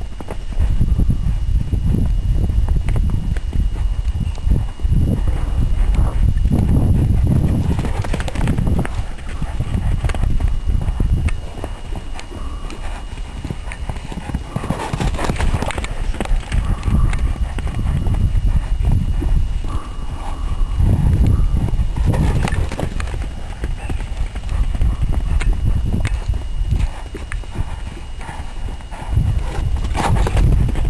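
Hoofbeats of a Paso Fino stallion running and bucking on sand: uneven dull thuds over a constant low rumble, with several louder sharp bursts at about eight, fifteen and twenty-two seconds in.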